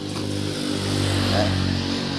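An engine running steadily, a low hum with a hiss over it, growing a little louder around the middle and easing off again.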